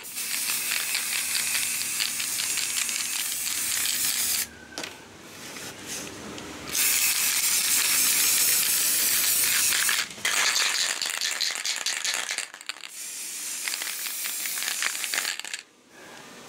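Aerosol spray can of grey primer spraying onto miniature figures: four long hissing bursts with short breaks between them, the longest break about four seconds in.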